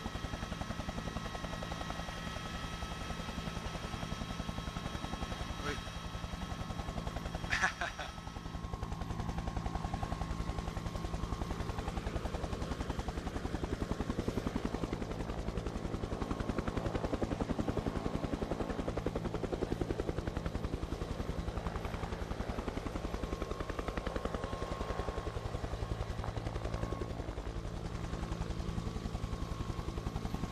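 Helicopter sound, steady rotor chop over a low engine drone, added to the broadcast by the channel rather than picked up live. A short sharp click about 8 seconds in, after which the sound goes on with slightly less high hiss.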